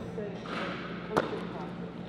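A single basketball bounce on a hardwood gym floor about a second in, with a short shout of "yeah" and a steady low hum in the gym.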